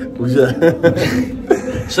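Men's voices talking and chuckling close to the microphone.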